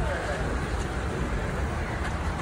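Steady low rumble of a car engine running close by, mixed with street traffic noise and faint voices.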